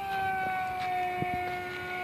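EFX Racer electric RC plane's motor and propeller whining in flight at low throttle: a steady high-pitched tone that sags slightly lower. The weak power is put down to its 6S battery probably running low.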